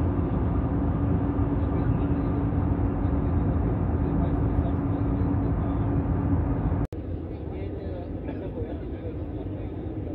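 Steady drone of an airliner's jet engines in flight, heard inside the cabin: a low rumble with a steady hum. About seven seconds in it breaks off suddenly and resumes quieter and with a different tone.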